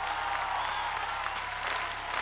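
Audience applauding and cheering as the song finishes.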